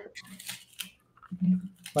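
Crisp cauliflower leaves being pulled back and snapped from the head, a few short dry cracks in the first second. A brief hummed voice sound comes later.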